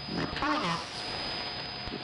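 Shortwave AM reception through the SDR receiver's audio: steady static hiss with a constant whistle tone. About half a second in, a brief voice from the station rises and falls in pitch.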